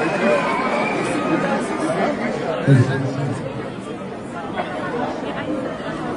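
A concert audience chattering, many voices talking at once. A man's voice briefly stands out from the babble about halfway through.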